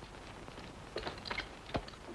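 A few light clicks and knocks from a horse-drawn stagecoach as a passenger climbs up onto it, several close together about a second in and one more near the end.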